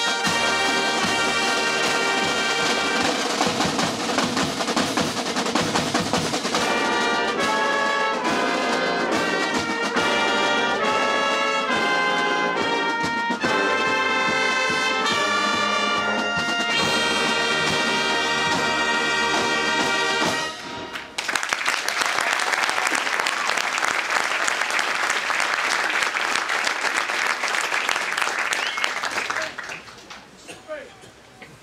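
Show and drum band playing: trumpets, saxophones and low brass hold sustained, changing chords over snare and bass drum. The music stops abruptly about two-thirds of the way through, and applause follows until near the end.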